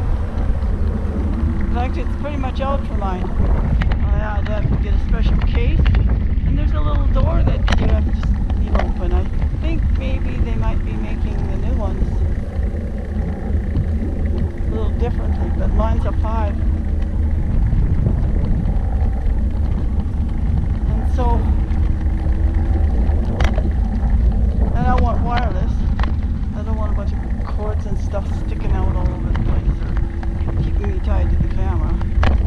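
Steady low rumble of wind on a GoPro's microphone and road noise from a recumbent trike in motion, with a woman talking over it.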